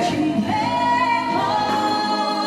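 Singing with musical backing: a voice holds one long note from about half a second in.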